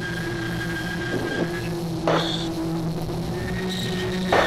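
SpaceShipOne's hybrid rocket motor burning during the boost, heard through the cockpit audio as a steady rumble with constant tones, and a short rush of noise about two seconds in.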